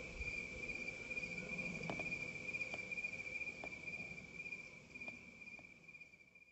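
Crickets trilling in one steady, high, unbroken tone, with a few faint ticks; the sound fades out near the end.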